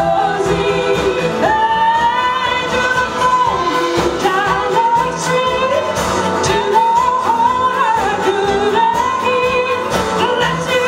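Live acoustic band with strings playing a song: female singing with a second voice in harmony over acoustic guitar and violins.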